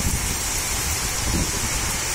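Heavy rain pouring down steadily: a dense, even hiss of the downpour.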